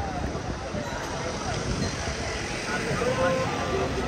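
Busy street at night: a low, steady traffic rumble with people talking nearby, the voices growing clearer in the last second or so.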